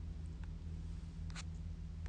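Quiet room tone: a steady low electrical hum with faint hiss, and a few faint short clicks.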